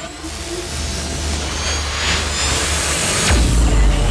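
Outro sound effects for an animated logo: a swelling whoosh of noise over a low rumble, building to a deep boom a little over three seconds in.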